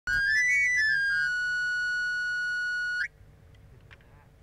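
Knife sharpener's panpipe (the afilador's whistle) blown in a quick run up and back down the pipes, then one long held high note that cuts off abruptly about three seconds in. This is the traditional call of a street knife grinder announcing himself.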